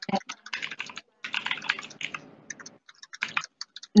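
Rapid, irregular clicking and tapping like typing on a computer keyboard, coming thickest in the middle.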